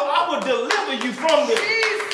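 A man preaching loudly into a handheld microphone, with hand clapping in the room.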